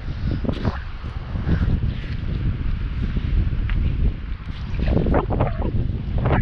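Wind buffeting the microphone with a heavy, uneven low rumble, over the crunch of footsteps on a wet sand-and-pebble beach.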